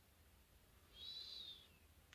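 Near silence with one faint, high whistle-like note about a second in. It rises slightly and then falls, lasting under a second.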